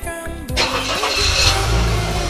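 A car engine starting about half a second in and then running, over background music.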